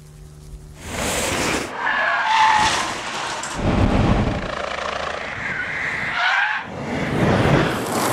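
Cars driven hard in a string of fast passes, tyres skidding and squealing, with the squeal standing out about two seconds in and again near six seconds.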